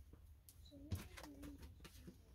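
Quiet handling of a tarot deck as a card is drawn, with a soft click about a second in. A faint, low, wavering tone sounds for about a second in the middle.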